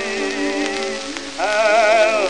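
Acoustic-era 1916 Columbia 78 rpm shellac record playing on a portable suitcase turntable. It plays a passage of music with held, wavering notes, and a louder note comes in about a second and a half in. Under the music run a steady surface hiss and light crackle.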